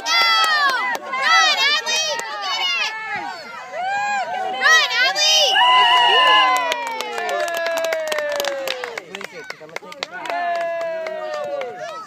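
Overlapping high-pitched voices of young children and adults shouting and calling out, with one long call about halfway through that falls slowly in pitch.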